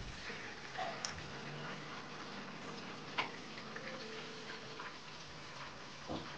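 Hand mixing dry flour and cornmeal in a stainless steel bowl for dumpling dough: faint rubbing and scraping with a few sharp clicks.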